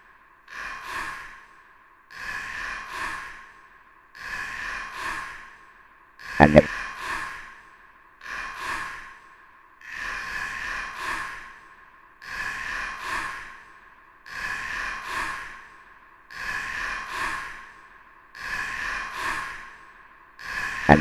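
A looped, breathy sigh-like vocal sound repeats about once every two seconds. A louder, pitched vocal burst comes about six and a half seconds in.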